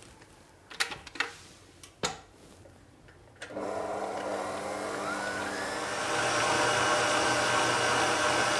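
A few clicks and knocks, then about three and a half seconds in the motor of a Smeg SMF01 stand mixer starts suddenly and runs steadily, kneading bread dough with its dough hook. A rising whine follows shortly after it starts, and the mixer grows louder about six seconds in.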